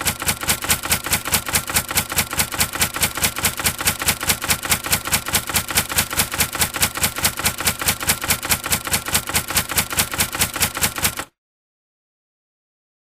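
Typewriter-style typing sound effect: rapid, evenly spaced key clicks at about five a second, stopping suddenly near the end.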